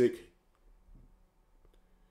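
A few faint clicks from a computer mouse scrolling through an on-screen menu, over a low steady hum. The end of a man's spoken word is heard at the very start.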